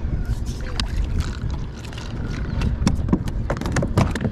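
Wind buffeting the microphone and small waves lapping at a kayak hull, with scattered sharp clicks and knocks throughout.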